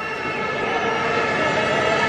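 Football stadium crowd noise dominated by a steady drone of many fans' horns blowing at once, several held tones layered together at an even level.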